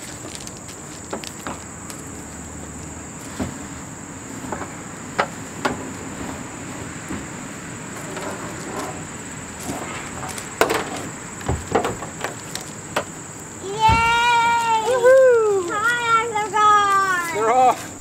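Scattered knocks and clicks of a plastic kayak being handled and slid off a car's roof rack, over a steady high insect buzz. In the last four seconds a child's high-pitched voice calls out in long, wavering cries, louder than the rest.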